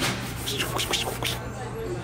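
Nylon track pants rustling as they are pushed along a clothing rack, a few short scrapes about half a second to a second in, over background music.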